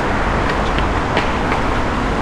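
Steady city road-traffic noise: a continuous low rumble and hiss of passing vehicles, with a few faint ticks.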